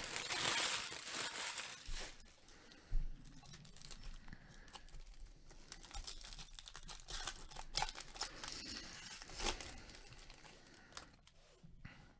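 Foil wrapper of a baseball card pack crinkling as it is torn and handled, loudest in the first two seconds. It is followed by fainter rustling and a few sharp clicks as the stack of cards is handled.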